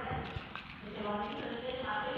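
Handling noise of hands drawing folded paper lots from a cup right by the phone: two soft low knocks just after the start, with faint voices behind.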